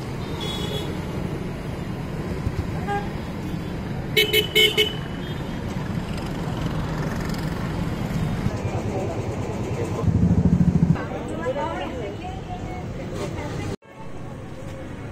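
Outdoor road traffic noise with a vehicle horn tooting three times in quick succession about four seconds in, and a brief loud low engine rumble about ten seconds in.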